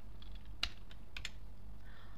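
A few scattered keystrokes on a computer keyboard as a short phrase is typed, with the clearest clicks just over half a second in and about a second in.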